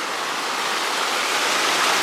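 Small waterfall on a woodland stream: water rushing steadily over a stone lip, heard close up.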